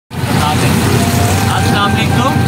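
Auto-rickshaw engine running steadily while riding along, with a man's voice starting near the end.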